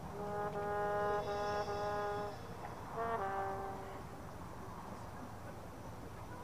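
A marching band's brass section plays a held chord in a few pulsed attacks, then a shorter closing chord about three seconds in that cuts off a second later. After that only the open-air background remains.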